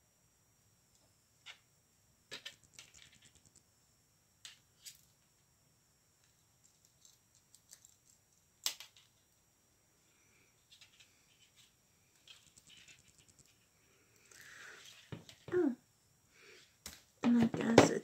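Scattered small plastic clicks and taps from handling a toy proton pack and action figure, with one sharper click about nine seconds in. A voice starts near the end.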